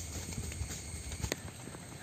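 Water drops dripping irregularly onto leaves in wet monsoon foliage, a scatter of light taps and clicks over a steady hiss, with one sharper tap a little past halfway and a low rumble that fades about two-thirds of the way through.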